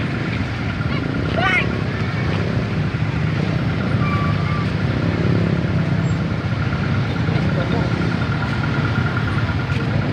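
Motorcycle and car engines running at low speed in slow, crowded traffic, with people talking around them and a faint steady high tone throughout.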